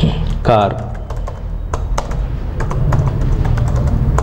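Computer keyboard typing: a run of quick, irregular keystrokes starting about a second in, over a steady low hum.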